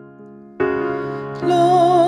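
Keyboard chords held and fading, a new chord struck about half a second in, then a singer's voice comes in near the end with the opening of a sung psalm.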